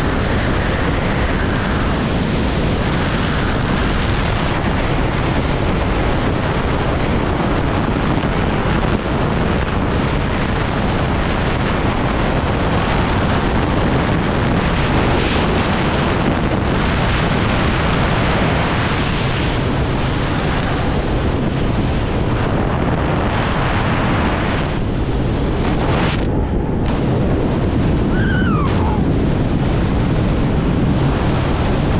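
Loud, steady rush of wind over the microphone of a camera carried by a wingsuit flyer in high-speed flight.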